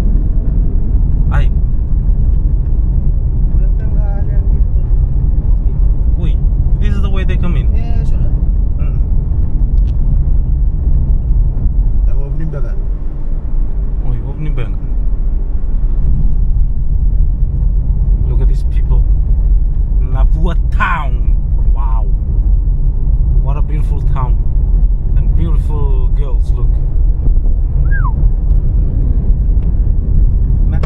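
Steady road and engine noise inside a moving car's cabin, a continuous low rumble, with brief bits of voice over it a few times.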